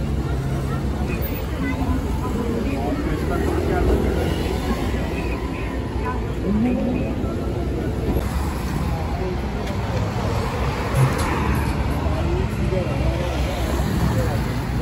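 City street ambience: motor traffic running past with a steady low rumble, mixed with the voices of passers-by talking, and a single short knock late on.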